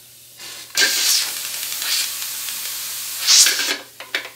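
Steam hissing from a luthier's steam generator and hose, the steam used to soften the glue in a guitar's neck joint. The hiss starts about a second in, runs steadily, swells near the end and cuts off just before the end.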